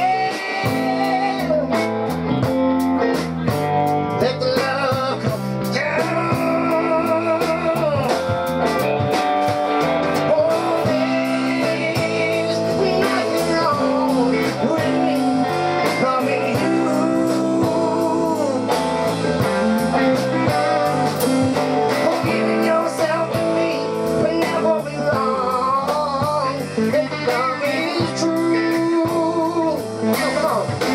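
A live band playing electric guitars over a drum kit, with a singer.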